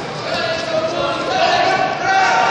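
Overlapping voices calling out in a large, echoing sports hall, with no single clear speaker.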